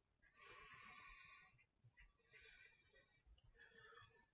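Faint breathing of a man catching his breath after a set of dumbbell exercises: one long breath, then a second, weaker one.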